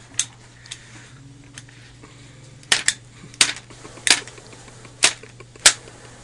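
A hand stapler snapping shut again and again as staples are driven through a paper flag held against a man's arm. There are a few faint clicks at first, then about six sharp snaps roughly two-thirds of a second apart in the second half.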